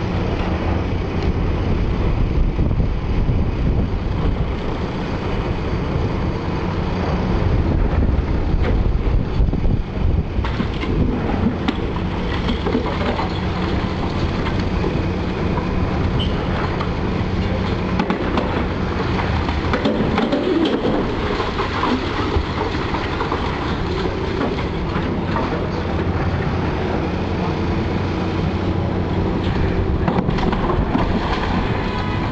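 Demolition excavator's diesel engine running steadily under load while its hydraulic demolition jaws crunch through concrete and brickwork, with rubble clattering and falling.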